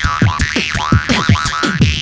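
Jaw harp (vargan) twanging in quick rhythmic plucks, its overtones sweeping up and down as the player reshapes his mouth. It plays over a hip-hop beatbox beat with low kick-like thumps.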